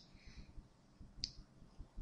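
Near silence with a single short, sharp click a little over a second in.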